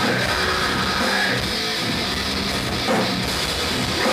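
Hardcore metal band playing live: heavily distorted electric guitars over a driving drum kit, loud and continuous.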